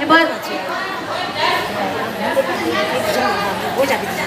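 Several people talking at once, overlapping chatter of a seated gathering in a large room, with a short spoken phrase right at the start.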